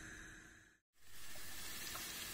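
Diced onion and garlic sizzling in oil in a frying pan, softening in the early stage of sautéing. The sizzle fades and cuts out completely for a moment about a second in, then resumes a little stronger.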